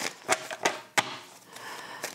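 Three short taps or clicks in the first second as an oracle card deck is handled on the table, followed by faint rustling.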